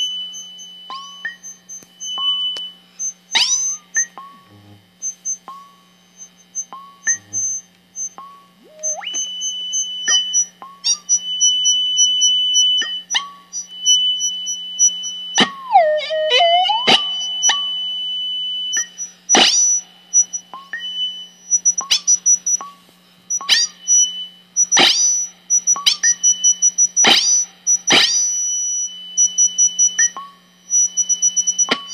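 Ciat-Lonbarde Plumbutter synthesizer playing a rhythmic feedback patch. Sharp electronic chirps fall quickly in pitch, unevenly spaced at first and more regular after about two-thirds of the way in, over a steady high tone that cuts in and out and a low steady hum. Around the middle a pitch swoops down and back up.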